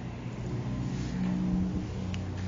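A low, steady motor drone that grows a little louder just past the middle.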